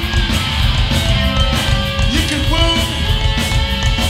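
Live hardcore punk band playing a song: electric guitar, electric bass and a drum kit, loud and dense, with melodic guitar lines over the pounding low end.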